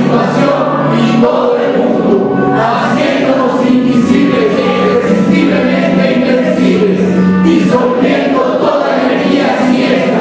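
Choral music: many voices singing together in long held notes, loud and unbroken.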